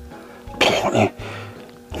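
A man coughs once, briefly, about half a second in, over background music with a steady low beat.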